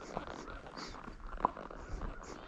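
Paso Fino horse's hooves stepping along a road, an uneven run of knocks and a few sharp clicks, the sharpest a little past halfway.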